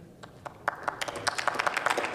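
Members of parliament applauding: a brief hush, then a run of clapping from a group that starts under a second in.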